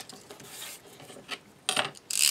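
Craft tools and paper handled on a cutting mat: a sharp click as something is set down, then light rubbing and shuffling as a metal ruler is slid aside and paper is moved.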